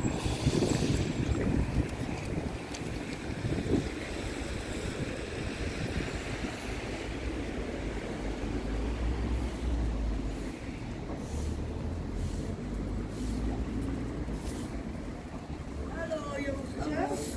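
Street ambience: a steady low rumble of traffic with wind buffeting the microphone, heaviest about halfway through.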